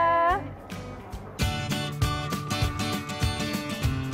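A long held 'yeah' ends in the first half second. About a second and a half in, background music starts: guitar strumming with a steady beat.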